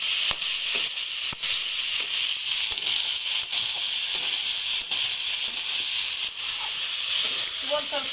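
Cauliflower and potato frying with spice paste in a metal kadhai: a steady sizzle, with a metal spatula stirring and scraping against the pan and clicking on it every second or so.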